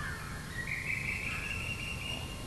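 A faint, high, drawn-out animal call over background hiss. It holds one pitch and steps up slightly under a second in.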